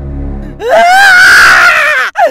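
A low droning music chord, then about half a second in a loud, high-pitched, wavering scream that holds to the end.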